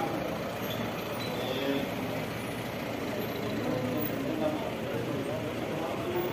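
An SUV driving slowly past along a narrow street, its engine running steadily, with people's voices talking in the background.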